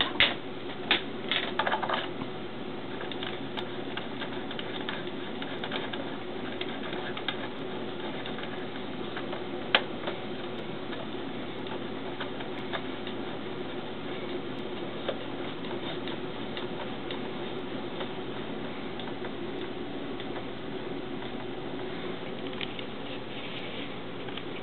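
Steady hum of running bench test equipment, with a few clicks and knocks in the first two seconds and one sharp click about ten seconds in, from handling an antenna cable being connected to a spectrum analyzer's input.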